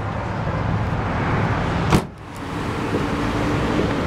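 Chevrolet Silverado's Vortec 5.3-litre V8 idling steadily, with one sharp knock about halfway through.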